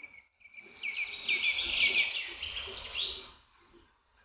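A bird singing a quick run of high chirping notes over a thin, steady whistle, with a faint low rumble underneath; it stops abruptly a little after three seconds in.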